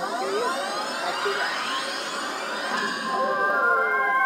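Fortune of Asia video slot machine playing its electronic sound effects during a free-spin bonus: a wash of sweeping, gliding tones while the reels spin, turning into steady chime-like held notes near the end as the reels land.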